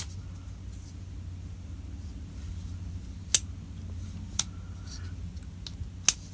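A few sharp clicks from an Ozark Trail ball-bearing folding knife as its blade is worked open and shut and the lock catches: one right at the start, a louder one about three seconds in and a smaller one about a second later, over a steady low hum.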